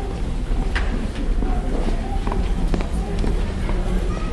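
Banquet-room hubbub with faint voices over a low steady hum, and a scatter of light knocks and footsteps, in the pause before the piano starts.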